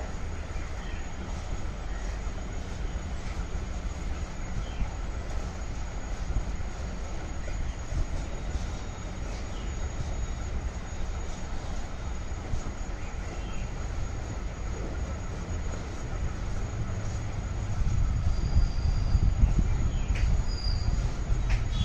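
Cow being milked by hand, with the squirts of milk going into a steel bucket of froth, over a steady low rumble.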